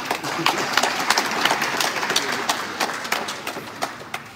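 Audience applauding: many hands clapping at once, swelling quickly at the start and fading away near the end.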